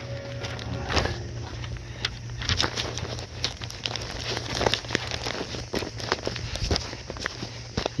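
Footsteps on a paved driveway, irregular, with the rustle of a carried stack of newspaper flyers, over a steady low hum.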